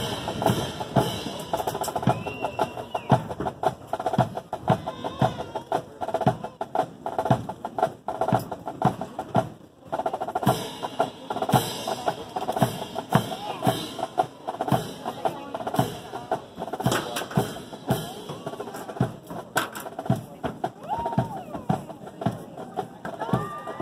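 Military marching band playing a march, with snare and bass drums keeping a steady beat.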